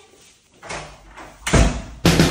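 A door closing with a single heavy thump about three quarters of the way in, after a brief swishing noise.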